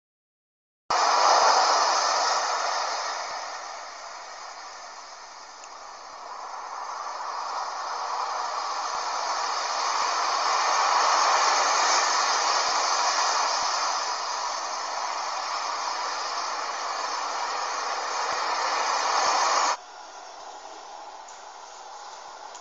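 Loud steady rushing hiss that swells and fades slowly, then cuts off suddenly near the end, leaving only faint room noise.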